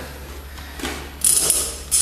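A few short mechanical clicks and rattles of equipment being handled, the loudest a bright rattle about a second in and another near the end.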